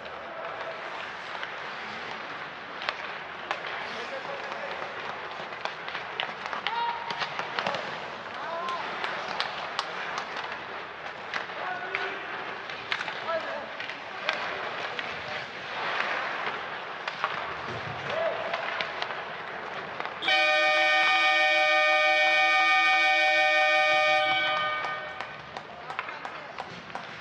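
Ice hockey play on the rink, with sharp clicks and scrapes of sticks, puck and skates and voices calling out. About twenty seconds in, the arena's end-of-period horn sounds, one loud steady tone held for about four seconds before it fades, as the clock runs out on the first period.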